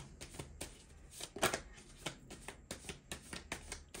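A tarot deck being shuffled by hand: a rapid, irregular crackle of cards riffling and slapping together, with one louder snap about one and a half seconds in.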